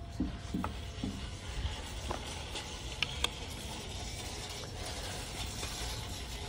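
Wooden decorations being handled on a shelf, giving a few light knocks and taps, the sharpest pair about three seconds in, over a steady low background hum.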